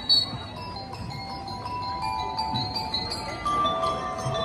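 A drum and lyre corps starting its piece: a short high whistle toot right at the start, then bell lyres ringing out a slow melody of held notes over a few low drum beats.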